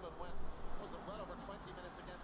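Faint sports commentator's voice from a television broadcast of a Gaelic football match, talking on without clear words.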